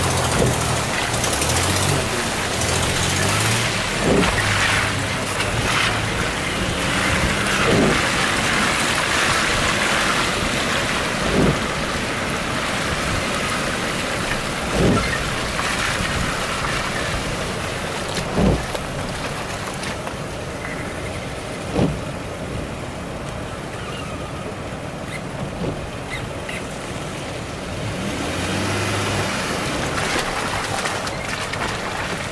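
Off-road SUV engine running, heard from inside a vehicle's cab. A dull knock comes about every three and a half seconds through the first two-thirds.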